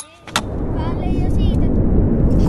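Stunt scooter wheels rolling over rough asphalt: a sharp clack about a third of a second in, then a loud, rough rumble that keeps building.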